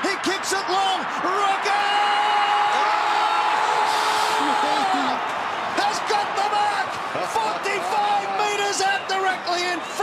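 Stadium crowd at an Australian rules football match cheering and shouting in a steady, loud wall of noise. Individual voices yell over it, with one held shout from about two seconds in until about five seconds.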